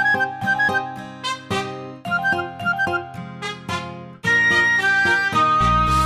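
Instrumental children's song music: short, quickly fading notes pick out a melody, then about four seconds in held lead notes take over, with bass and a beat coming in near the end.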